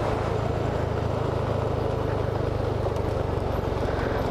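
Sport motorcycle engine running at a steady, even pitch while the bike cruises, under a steady hiss of wind and road noise.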